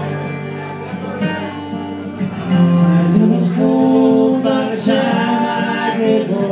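Live band playing a song: a man singing long held notes over acoustic and electric guitars and drums. It gets louder about two and a half seconds in.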